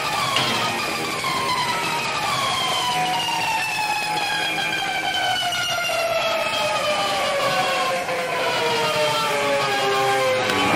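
Soundtrack music intro of several sustained tones gliding slowly downward in pitch together, a long drawn-out descending sweep.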